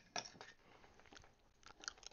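Faint, scattered clicks and mouth sounds of dentures being fitted into the mouth.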